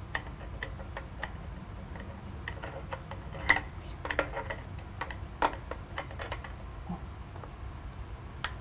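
Scattered small clicks and taps as an eyeglass lens is handled and fitted into a small plastic demonstration stand, the sharpest about three and a half and five and a half seconds in, over a low steady hum.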